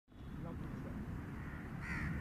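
A crow cawing once near the end, over a low outdoor background with faint distant voices.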